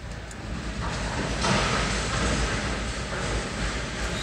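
Empty autorack freight cars rolling past: a steady rumble and rail noise that grows louder about a second in.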